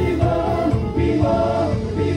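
Women's gospel choir singing a praise song into microphones, amplified through the church sound system.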